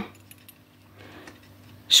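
A few faint, light clinks of small metal fashion rings knocking against each other as fingers handle them on a cardboard display card.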